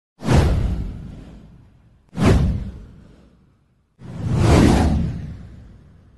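Three whoosh sound effects for an intro title. The first two come in sharply and fade away over about a second and a half. The third swells up about four seconds in, then fades.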